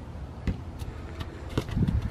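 A few dull thumps and knocks over a faint low outdoor rumble, one about half a second in and a louder cluster near the end.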